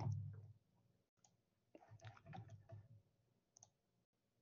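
Very quiet desk sounds: a soft thump at the start, then a few faint computer-mouse clicks about two to three seconds in.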